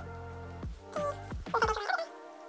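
Background music: held chords over a steady bass with a regular drum beat, and a short melodic phrase near the end, just as the bass drops out.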